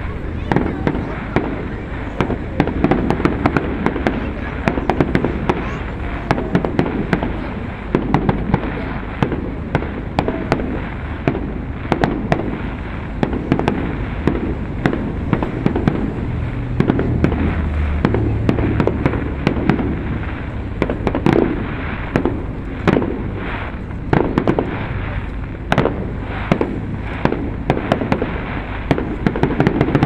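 Small aerial firework shells bursting one after another, a continuous string of sharp bangs and crackles several times a second, over a background murmur of voices.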